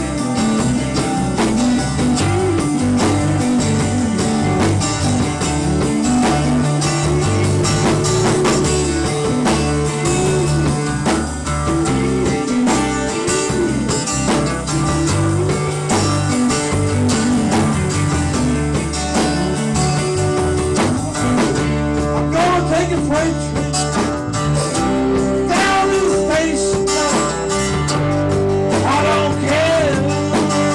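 Live bar band playing a Southern rock cover: electric and acoustic guitars over bass and drums, with a melodic line bending up and down above a steady low groove.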